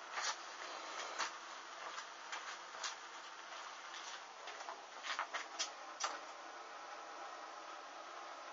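Burning synthetic swimsuit fabric crackling: irregular sharp pops and clicks, clustered around the first second and again between five and six seconds in, over a steady faint hiss.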